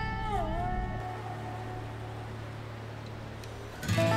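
Background music on guitar. A slide guitar note bends down and fades in the first half-second, a steady low hum holds, and a new guitar note comes in right at the end.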